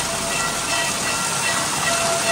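Water pouring from a row of stone spouts and splashing, a steady rush. A faint held tone sounds on and off over it.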